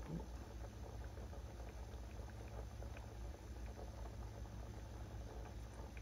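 Coconut-milk stew boiling in a metal pot: a faint, steady fine crackle and patter of small bubbles breaking at the surface, over a low steady hum.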